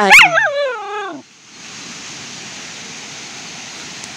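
Young Samoyed whining in a high, wavering call whose pitch bends up and down, ending abruptly about a second in. A steady hiss follows.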